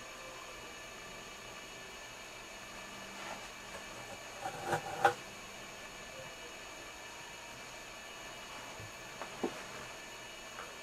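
Steady low hiss of room and recording noise, with a few soft rustles and clicks from a paper towel being handled. The clicks cluster a few seconds in, with the loudest about halfway through, and one more comes near the end.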